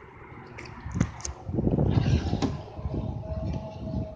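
Rear seatback of a Honda Accord sedan being released from the trunk: a sharp click of the release lever about a second in, then about a second of loud clunking and rattling as the seatback unlatches and drops forward, ending with another click.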